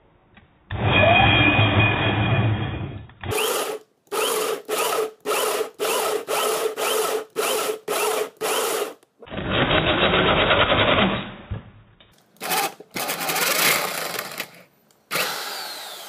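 Corded power drill driving a 64 mm holesaw through a softwood board, its motor running under load while the saw teeth cut a ring. It comes in several stretches, with a run of short bursts about two a second in the middle, and runs down near the end.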